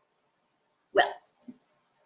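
A woman's brief non-word vocal sound: one short, sharp exclamation about a second in, followed by a faint low one half a second later.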